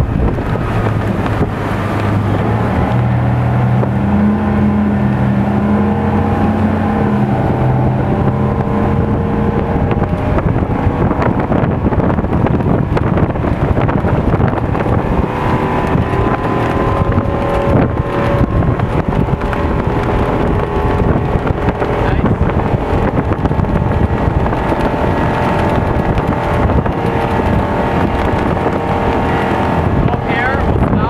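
Rinker 242 Captiva bowrider running at speed, its sterndrive engine droning steadily under the rush of water from the wake and wind buffeting the microphone.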